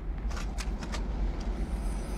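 Low, steady rumble of a car riding, heard from inside the cabin, with a few light clicks.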